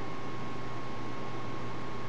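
Steady background hiss with a low hum and a thin, constant high tone, and no distinct events: room tone and recording noise.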